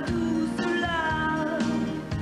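Pop song with band accompaniment, a woman's voice holding long, gliding notes over it.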